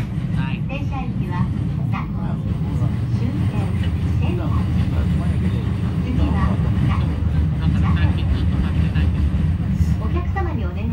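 Steady low rumble of a moving vehicle heard from inside its cabin, with voices talking in the background.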